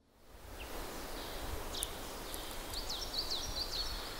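Outdoor ambience fading in: a steady low rumble of background noise, with birds chirping in short, quick calls from about a second and a half in.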